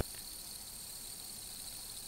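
Faint, steady whirring hiss of a fidget spinner spinning on its bearing.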